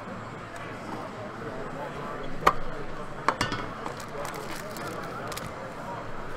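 Metal trading-card tin handled and opened, with two sharp clicks about two and a half and three and a quarter seconds in and lighter handling ticks. Behind it a steady murmur of crowd chatter.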